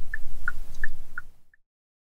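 2020 Hyundai Santa Fe's turn-signal indicator ticking in the cabin, about three ticks a second alternating between two slightly different pitches, over a low road rumble. Everything cuts off suddenly about one and a half seconds in.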